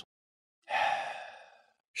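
A person's single breath out, a sigh that starts under a second in and fades away over about a second.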